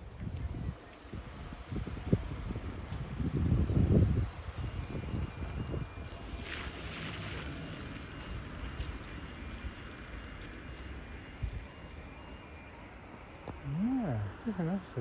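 A car driving out past close by, its low rumble peaking about four seconds in, with wind buffeting the microphone. A run of faint short beeps follows for a second or two.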